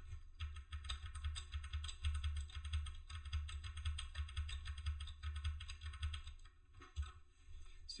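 Computer keyboard keystrokes in quick succession, key after key, as a command line is edited, thinning out near the end. A low hum runs underneath.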